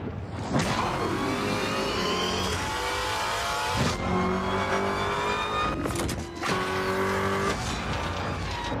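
Dodge Challenger SRT Demon's supercharged V8 accelerating hard through the gears: the engine's pitch climbs, drops sharply at an upshift about four seconds in and again at another around six and a half seconds, then climbs once more.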